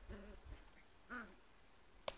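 Faint whining from Bedlington terrier puppies: a short whine at the very start and one higher squeal, rising then falling in pitch, about a second in.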